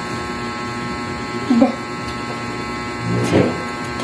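A steady electrical buzzing hum throughout, with a child's voice briefly sounding out phonics letter sounds twice, once about a second and a half in and again, louder, about three seconds in.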